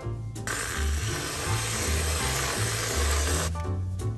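Aerosol can of whipped cream spraying: a steady hiss that starts about half a second in and cuts off suddenly about three seconds later, over background music.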